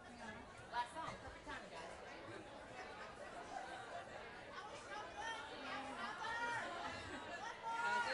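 Faint, indistinct chatter of several people talking in a bar room, with no music playing.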